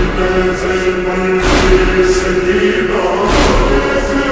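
Noha, a mournful chant, sung by male voices, slowed down and drenched in reverb, on long held notes. Low thumps fall about a second and a half in and again just past three seconds.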